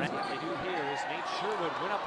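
A basketball bouncing on a hardwood gym floor during play, a knock about every half second, with voices in the hall.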